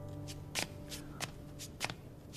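About five sharp taps or clicks at uneven spacing, like steps or small objects being handled, while the last low notes of background music fade out about halfway through.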